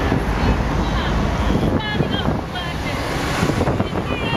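Wind buffeting the camera's microphone, a steady low rumble, with the chatter of a crowd of people talking behind it.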